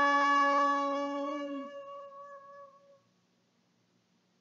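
A male folk singer holds the final long note of a Japanese min'yō song, steady in pitch. The note ends about a second and a half in, its ring fades out, and from about three seconds in only faint cassette-tape hiss and hum remain.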